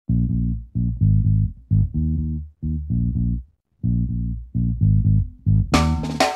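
Solo bass guitar playing a riff in short phrases, with a brief gap in the middle. Near the end the full band comes in with drums and cymbals.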